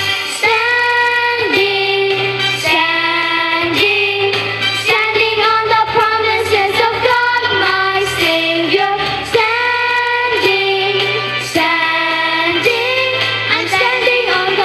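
Children's choir singing a worship song with a woman's voice leading, over an instrumental accompaniment with a bass line.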